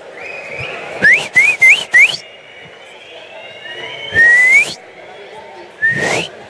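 People in a crowd whistling to cheer: four quick, sharp upward-gliding whistles about a second in, a fainter drawn-out one, then a loud rising whistle past the four-second mark and another near the end, over a low crowd murmur.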